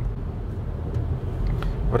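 Inside the cabin of a Cupra Ateca with the 2.0 TSI turbo four-cylinder, driving on a wet road: a steady low rumble of engine and tyres.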